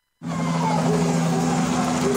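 After a brief dropout, a steady low drone of a helicopter hovering overhead, under a wash of outdoor street noise.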